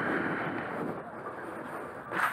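Steady rushing noise of a moving e-bike: wind and tyre noise from riding on a paved path, easing off slightly.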